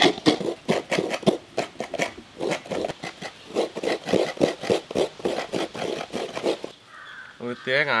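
Coconut flesh being scraped out of coconut halves on a hand grater: a fast, even run of rasping strokes, about three or four a second, that stops near the end.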